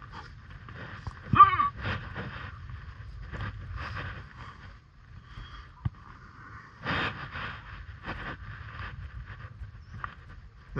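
Close scuffs and breaths of a climber moving up a sandstone slab, with a short voiced sound about a second and a half in and a sharp click near six seconds.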